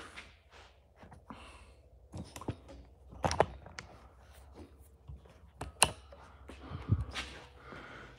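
A few faint, scattered clicks and knocks, as of small objects being handled and set down, with one low thump near the end.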